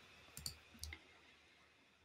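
Near silence in a pause between sentences, with two or three faint clicks in the first second.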